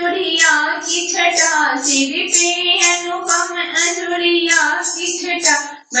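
A high voice singing a Shiva bhakti bhajan in Bhojpuri/dehati folk style, holding long melodic notes. The singing breaks off for a moment just before the end.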